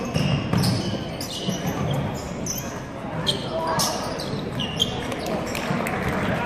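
A basketball game in play on a hardwood gym court: the ball bouncing as it is dribbled, and sneakers squeaking on the floor in many short, high squeaks, over spectators talking.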